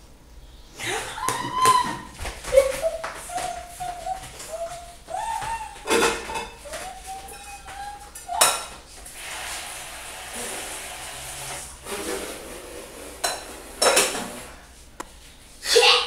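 A woman's voice singing in short gliding phrases, mixed with sharp clatters of pots and pans on a kitchen stove. This is followed by a few seconds of steady hiss and then more knocks.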